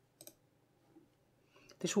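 Computer mouse button clicking: two sharp clicks in quick succession just after the start, then a faint tick about a second in.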